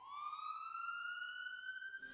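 Ambulance siren starting up, its single tone climbing quickly at first and then slowly into a long, steady wail.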